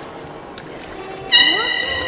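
Marine-mammal trainer's whistle blown sharply as a bridge signal: a sudden loud, high, steady whistle starts about a second and a half in and is held.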